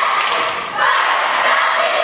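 Cheerleading squad shouting a cheer in unison, drawing out each word in long loud phrases, with a sharp thud shortly after the start.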